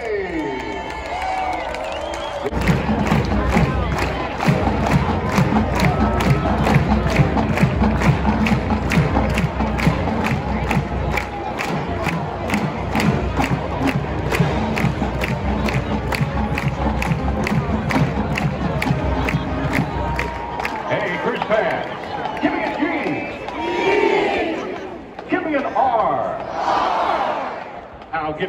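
Marching band playing on a football field, its drums keeping a steady beat of about two to three strokes a second over the stadium crowd. The band stops about 21 seconds in, and crowd cheering and shouts are left.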